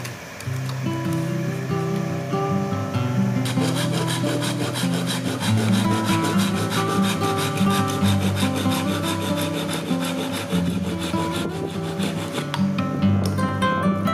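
Hand saw cutting through a bamboo pole in rapid, even back-and-forth strokes, starting a few seconds in, over acoustic guitar music.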